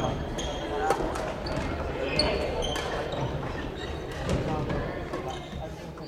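Badminton rackets striking shuttlecocks, a string of sharp smacks at irregular intervals from several courts, echoing in a large sports hall, with brief sneaker squeaks on the wooden floor.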